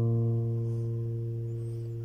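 A single bass note on an acoustic guitar's sixth string, plucked just before, ringing on and slowly fading as part of a G chord shape.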